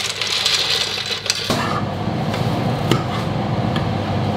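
Dry penne pasta being tipped into a steel pot, the hard pieces clicking and rattling as they fall. About a second and a half in, this gives way to a steadier, lower noise with a few knocks.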